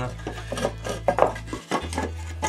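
Wooden board knocked and scraped by hand against the shelf and floor: a few short clattering knocks, the loudest a little past a second in.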